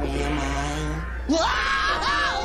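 Sustained notes of cartoon soundtrack music, then about a second in, a cartoon character's voice cries out, rising in pitch and holding the cry.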